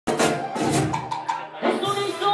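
Live band music with a button accordion and hand-drum strokes. A voice comes in near the end.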